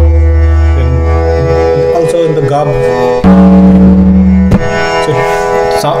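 Tabla being played over a steady drone. A deep bayan stroke rings out for about two seconds. About three seconds in, a second stroke sounds both drums, the bass ringing with the higher dayan tone, and a sharp stroke cuts it short after about a second.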